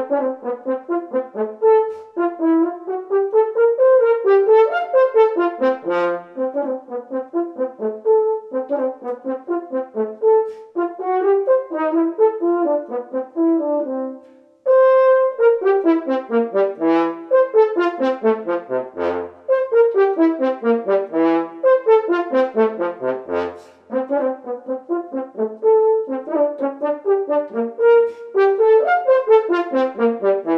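Unaccompanied French horn playing a quick, lively study passage: continuous runs of short notes with wide leaps and falling arpeggios. About halfway through the playing breaks off briefly, then resumes on a held note before the runs go on.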